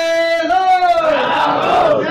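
A man's voice singing a naat unaccompanied, drawing out long vowel notes that bend up and then slowly fall in pitch.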